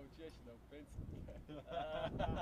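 Men laughing: short voiced chuckles at first, swelling into open laughter near the end.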